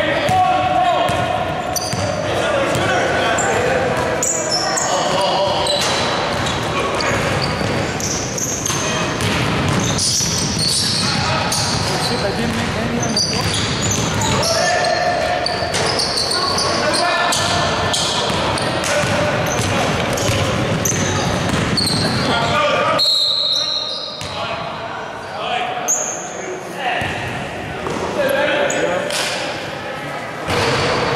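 Basketball game sounds in a large gym: the ball bouncing on the hardwood court among indistinct voices, with the echo of the hall. The sound goes briefly quieter about three-quarters of the way through.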